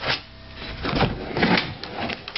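Large plastic tub being moved aside by hand: a few short knocks and scrapes of plastic, loudest about a second in.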